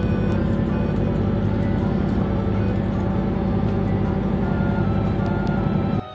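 Tour boat's motor running steadily as a low rumble heard inside the cabin, with background music over it. The rumble stops suddenly at the end.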